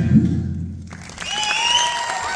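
Audience applauding in a concert hall as the band's last notes fade out in the first second; the applause swells up again after a short dip.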